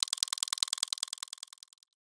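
Glitch sound effect of a logo animation: a rapid, even run of sharp electronic clicks, roughly twenty a second, that fades out and stops shortly before the end.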